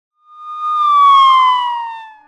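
A single siren-like tone that swells in, slides slowly down in pitch and fades away.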